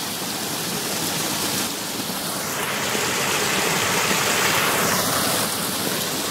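Water running in a small irrigation canal, a steady rushing that grows louder for a couple of seconds midway.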